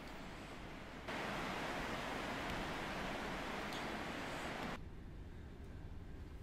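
Steady hiss of rain falling outside, stepping up louder about a second in and dropping back abruptly near the end.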